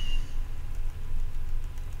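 A steady low rumble with no speech over it, and a faint, brief high tone right at the start.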